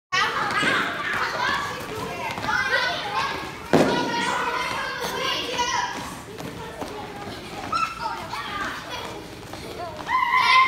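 Children shouting and calling out as they play a running game in a gym, their voices echoing. One loud thump comes a little under four seconds in.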